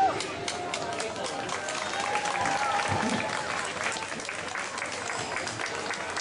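Audience applause begins as the dance music stops right at the start, many hands clapping with voices calling out in the crowd.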